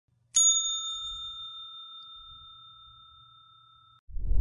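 A single bell struck once, about a third of a second in, ringing on with a clear high tone that slowly fades away over about three seconds.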